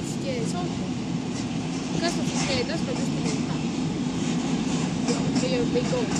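A freight train of container wagons rolling past along the shore, a steady low rumble.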